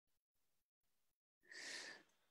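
Near silence, then about a second and a half in a faint breath, like a short sigh or inhale, lasting about half a second.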